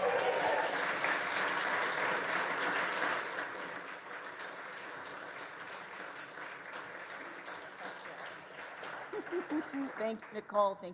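An audience applauding right after a song ends, loudest for the first three seconds and then tapering off. A voice starts speaking near the end.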